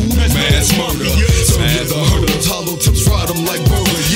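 Hip-hop track playing: a deep bass line and drum beat with a vocal layer over it.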